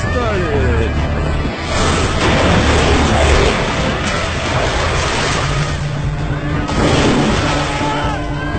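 Film soundtrack mix: a music score with shouting voices, and a loud rush of splashing water from about two seconds in until near seven seconds.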